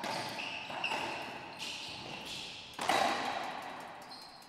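Racquetball doubles rally: sharp ball strikes that echo around the enclosed court, with the loudest hit about three seconds in, and short high squeaks of sneakers on the hardwood floor in the first second and a half.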